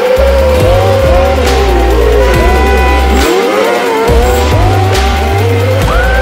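Several autocross buggy engines revving hard, pitch repeatedly climbing and dropping as they shift gears, over background music with a steady beat and a stepping bass line.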